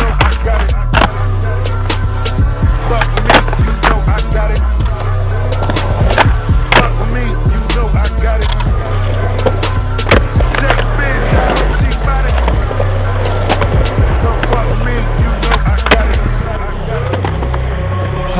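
Skateboard on concrete: urethane wheels rolling, with sharp tail pops and clacking landings of flip tricks and ledge tricks, struck many times across the stretch. Under it runs a loud hip hop track with a heavy bass beat.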